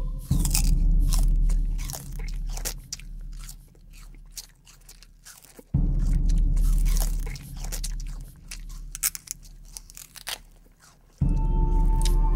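A man biting and chewing a stick of sugar cane: a long run of sharp, irregular crunches and snaps as the fibrous stalk is bitten and chewed, over a low drone that fades in and out. Music with steady tones comes in near the end.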